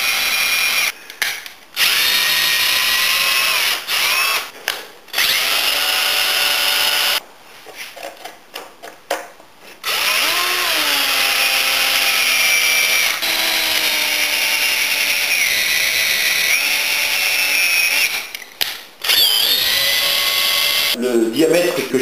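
Electric drill-driver boring through green hazel wood with a long 8 mm wood bit. It runs in repeated spells of a few seconds with short stops, its motor whine rising and falling in pitch. It is run in bursts because chips cannot clear easily from green wood.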